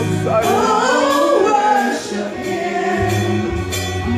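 Live gospel worship song: several women singing into microphones over instrumental accompaniment. The low bass notes drop out for about two seconds in the middle and come back near the end.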